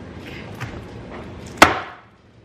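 Low rustling of socks being pulled out of a cardboard advent calendar box, then one loud, sharp smack about one and a half seconds in as her hand strikes something hard.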